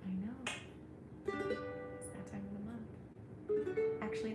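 Ukulele being strummed: a chord about a second in rings out and fades, and a second chord is struck near the end.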